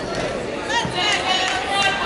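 Indistinct voices of several people talking and calling out around a volleyball court.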